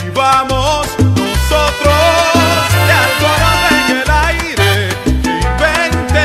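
Salsa music: a romantic salsa track with a steady, repeating bass line under regular percussion and pitched melody lines.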